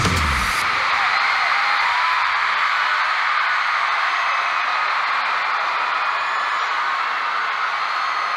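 The song's music cuts off about half a second in, and a large stadium crowd keeps cheering and screaming, a steady, high-pitched wash of fan voices.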